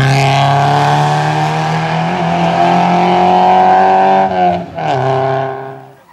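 A race-prepared small hatchback's engine is held at high revs as it accelerates through a cone slalom. About four and a half seconds in the revs drop sharply at a lift or gear change, then climb again before the sound fades out near the end.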